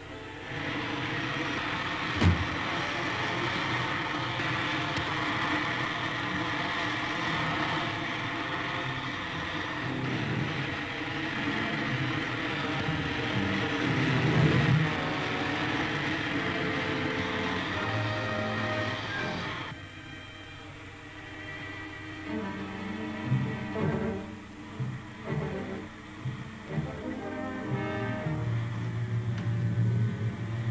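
Dramatic orchestral serial music over a steady rushing hiss, with a single sharp knock a couple of seconds in. About two-thirds of the way through, the hiss cuts off suddenly, and the music carries on more quietly in short, low, pulsing phrases.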